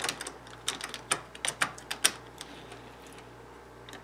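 Small clicks and taps of model railway tank wagons being set back onto the track by hand, wheels and couplings knocking on the rails. A quick run of clicks fills the first two and a half seconds, then it goes quiet.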